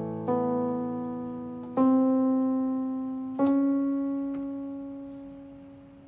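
Slow solo piano introduction: three chords struck about a second and a half apart, each left to ring and fade, the last held for over two seconds.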